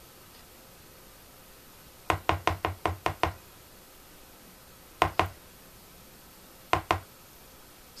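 Hard knocks of a kitchen utensil against a bowl of melted chocolate: a quick run of about eight about two seconds in, another knock about five seconds in, and two more near the end.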